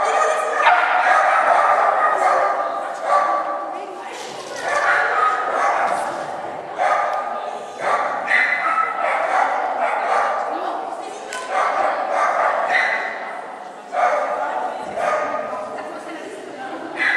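Small dog barking and yipping repeatedly while running an agility course, mixed with a person's voice calling out.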